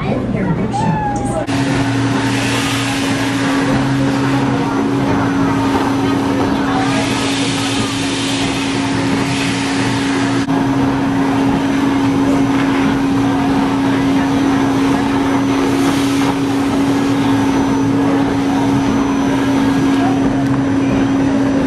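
Build-A-Bear stuffing machine's blower starts about a second and a half in and runs steadily: a low, even hum with rushing air as fibre fill is blown into a plush toy on the nozzle.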